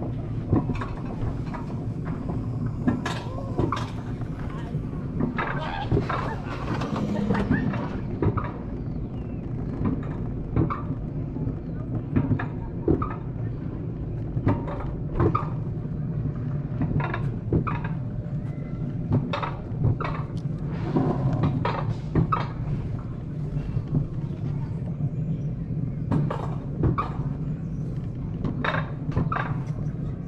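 Wiegand alpine coaster sled rolling down its steel tube track: a steady low rumble from the wheels with irregular sharp clacks from the track throughout.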